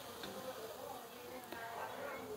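Faint sizzling of hot cooking oil as a wire strainer of freshly fried moong dal vadas drains over the pan, with a couple of tiny clicks.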